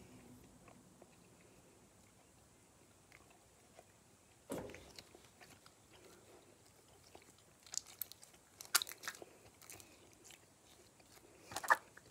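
Purple homemade slime being squeezed and kneaded by hand, giving faint, sparse wet clicks and pops. There is a soft thump about four and a half seconds in, and short clusters of sharper clicks a little past the middle and again near the end.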